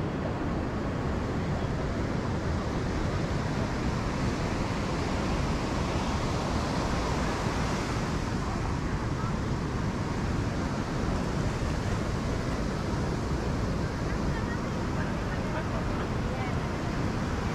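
Surf washing onto a beach as a steady roar, one wave swelling up about halfway through, with wind buffeting the microphone and faint voices of people around.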